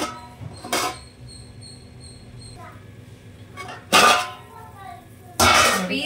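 A steel plate lid clinking against an aluminium cooking pot as it is lifted off, with short loud bursts of a person's voice in between.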